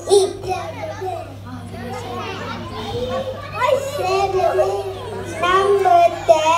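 A group of young children reciting Quranic verses in Arabic together, in a wavering sing-song chant that grows louder about halfway through.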